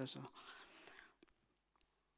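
A man's last spoken word trailing off into a faint breath, then near silence with one small click near the end.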